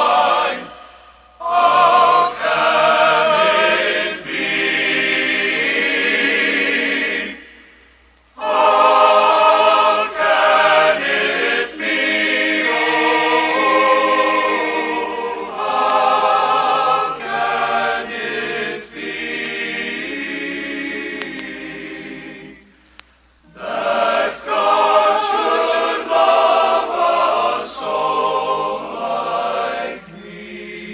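Men's choir singing in harmony, phrase by phrase, with short breaks between phrases about a second in, near eight seconds and near twenty-three seconds.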